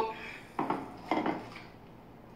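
A drinking glass and a plastic water pitcher set down on a kitchen counter: two short clinks about half a second apart.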